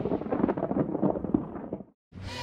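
Decaying tail of an intro title sound effect: a low rumble with scattered crackles that fades away and cuts to silence just before the end.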